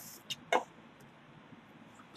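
A plastic ruler lifted off graph paper: a brief papery scrape, then two short taps about a quarter second apart, the second louder, as it is set down.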